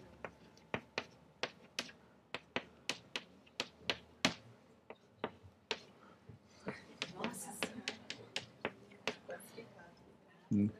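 Chalk knocking against a blackboard while writing: a run of short, faint, sharp clicks, two or three a second.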